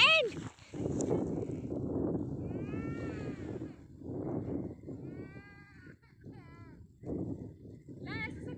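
People's voices murmuring, with several short, high calls that rise and fall in pitch, one at the very start, one about three seconds in and a wavering pair about five to six seconds in.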